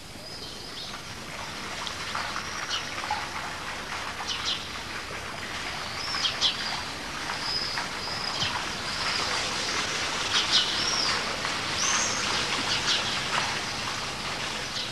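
Small birds chirping and whistling again and again over a steady rush of running water. The water grows gradually louder.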